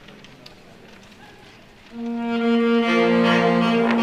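A high school concert band comes in after a couple of quiet seconds: a sustained brass chord enters about halfway through, and more instruments join in a second later.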